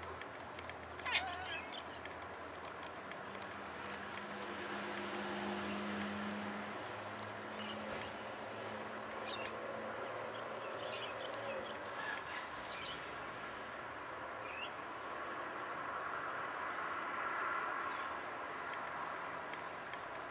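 A few short, high animal calls, the first sweeping downward about a second in and more scattered through the middle, over a steady low hum.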